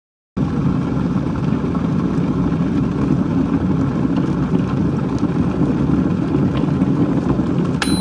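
A steady, loud rumbling noise that starts a moment in, with a sharp click and a steady high tone starting just before the end.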